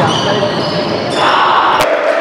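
Volleyball rally in a gym hall: players' shouts and ball contacts echoing, with a sharp knock just before the end.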